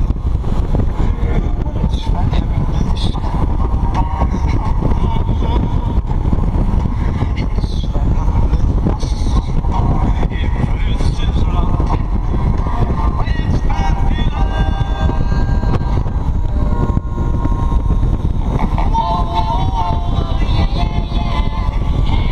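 Motorcycle riding at highway speed: a loud, steady rush of wind on the microphone over road and engine noise.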